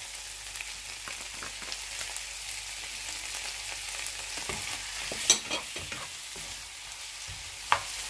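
Whole shrimp sizzling in butter in a nonstick frying pan, a steady hiss with small pops. Two sharp clicks of a utensil on the pan stand out, one about five seconds in and one near the end, as sambal goes in and a slotted spatula starts stirring.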